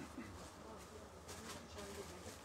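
Faint, steady low hum of room tone with a few faint ticks.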